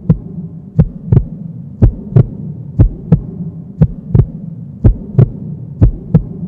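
Heartbeat sound effect: paired low thumps, a double beat about once a second, over a steady low hum.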